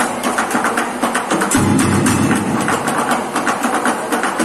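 Improvised percussion ensemble: sticks beating a fast, steady rhythm on plastic buckets, tin containers and a blue plastic barrel, with a deeper low layer joining about a second and a half in.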